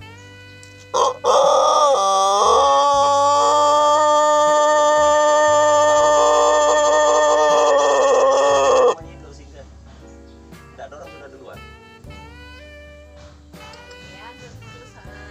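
Rooster of a long-crowing breed giving one very long crow: it starts about a second in, wavers briefly, then holds one steady pitch for about seven seconds and stops sharply.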